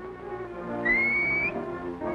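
A single high finger whistle, a call to summon someone, rising slightly in pitch and lasting about half a second, starting a little under a second in. Orchestral background music plays underneath.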